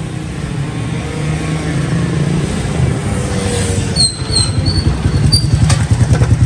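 Small motorcycle engine running and drawing closer, growing louder, with a few short high chirps about four seconds in.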